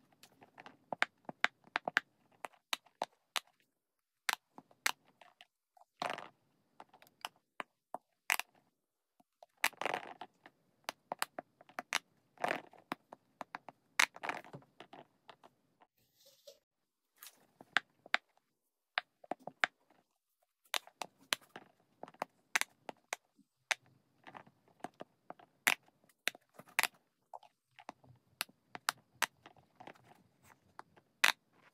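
Silicone bubbles of a cube-shaped pop-it fidget ball being pressed by fingers, giving an irregular run of sharp pops and clicks, a few louder than the rest.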